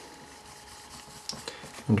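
Board marker writing a word on a board: faint scratching with a couple of light short ticks from the pen strokes.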